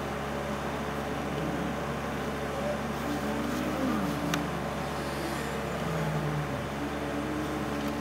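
A car engine idling with a steady low hum while stopped, as other vehicles' engines pass across in front, one falling in pitch as it goes by a little before four seconds in. A single sharp click about four seconds in.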